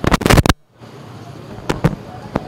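Press photographers' camera shutters firing: a quick run of sharp clicks in the first half second, then two single clicks near the end.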